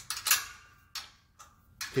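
Hand wrenches tightening steel mounting bolts and lock nuts: a few sharp metallic clicks in the first half second, and a fainter one about a second in.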